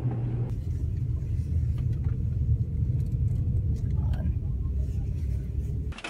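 Steady low rumble of a car heard from inside its cabin, engine and road noise; it cuts off abruptly at the very end.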